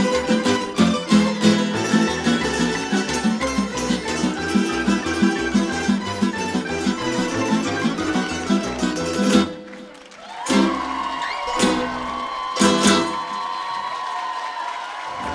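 Croatian tamburica orchestra playing: massed tamburas plucked in a fast, even rhythm over double bass. About ten seconds in the music drops out briefly, then returns with a sustained note and a few accented chords.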